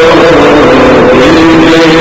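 Men singing a naat (Urdu devotional song), holding long notes that slide slowly up and down in pitch.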